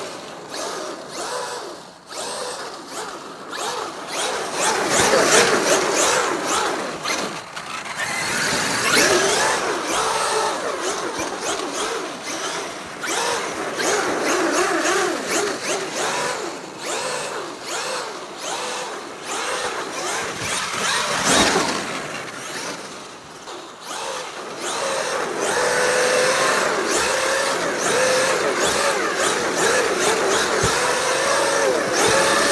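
Traxxas X-Maxx 8S RC monster truck's stock 1200 kV Velineon brushless motor and drivetrain whining, the pitch rising and falling over and over with the throttle as it drifts with its tyres spinning on ice and snow.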